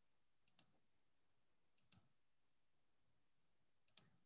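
Near silence broken by three faint double clicks: one about half a second in, one near two seconds, and one at the very end.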